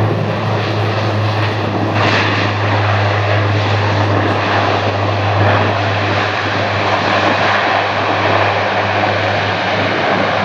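Turboprop engines and six-bladed propellers of a C-130J Hercules running as it taxis: a loud, steady low propeller drone over broad engine noise, growing brighter from about two seconds in.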